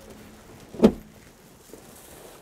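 A single short knock about a second in as the plastic storage compartment under the truck cab's bunk is handled, over a low background.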